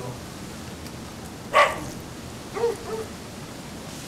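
A short, loud animal call about one and a half seconds in, then two fainter, shorter calls about a second later, over a steady background hiss.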